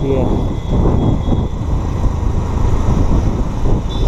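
Steady low rumble of a motorcycle being ridden: engine and road noise mixed with wind on the bike-mounted microphone.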